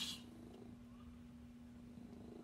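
A domestic cat purring, faint and steady, over a low continuous hum.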